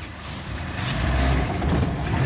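Classic VAZ Zhiguli's 1.5-litre carburetted four-cylinder engine pulling away under throttle, heard from inside the cabin. Its low drone gets louder about half a second in.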